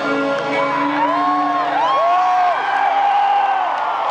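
Rock band playing live in a concert hall, recorded from the crowd: the drums stop at the start, leaving held notes and a few notes that slide up and fall away.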